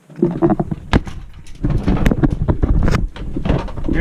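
Handling noise from a camera being picked up and carried: a low rumble of rubbing on the microphone, broken by repeated knocks, with a sharp one about a second in.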